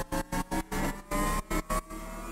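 A synth riser playing back with its volume chopped on and off by square-wave Mixtool automation, a stuttering gate several times a second over a slowly rising pitch.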